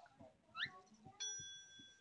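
Cartoon sound effects: a short rising squeak, then a bright bell-like ding a little after a second in that rings on for most of a second.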